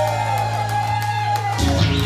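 Live band music: electric bass and guitars hold a sustained chord, then a new loud low chord is struck about one and a half seconds in.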